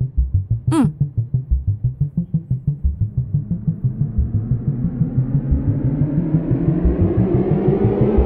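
Dramatic background score: a fast low drum pulse of about five beats a second, with a swell growing louder and brighter through the second half.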